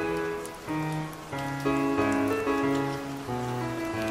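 Background music: held notes over a bass line, the chords changing every half second or so, with a steady hiss and faint crackle beneath.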